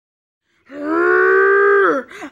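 A child's voice giving one long, loud, held wail at a steady pitch that starts about two-thirds of a second in and drops off at the end, a cry of frustration over the broken laptop.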